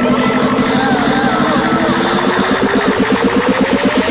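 Electronic dance music from a DJ mix building up: a fast, even beat under two rising synth sweeps, the lower one climbing faster and faster toward a drop.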